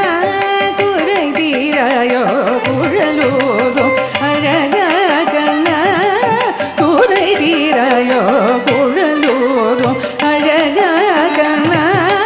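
A woman singing a Carnatic varnam in raga Charukesi, her voice gliding and oscillating through heavily ornamented phrases over steady drum strokes.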